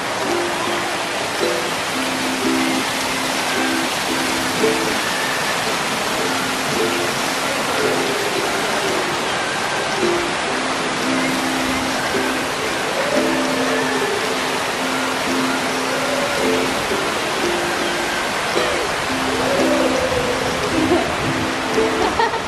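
Many fountain jets arcing and splashing into a shallow pool, a steady rush of falling water, with background music playing a simple melody of held notes over it.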